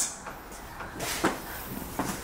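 Low background room noise with faint rustling and a couple of soft knocks about a second in.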